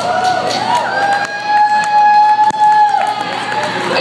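Crowd whooping and cheering. About a second in, a steady, unwavering high tone from the PA rings for about two seconds and then stops: sound-system feedback that puzzles the band.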